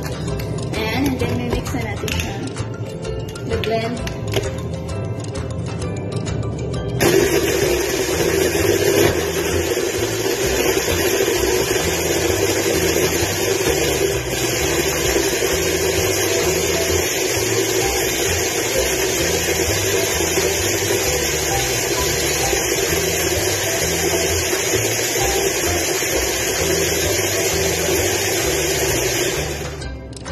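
Hand blender running on its chopper bowl, blending strawberries with milk into a shake. It is a steady whir that starts suddenly about seven seconds in and cuts off just before the end, after a few plastic clicks as the lid and motor unit are fitted.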